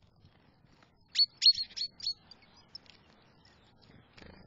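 Small songbird calling: a quick run of about five sharp, high chirps about a second in, followed by a few fainter chirps.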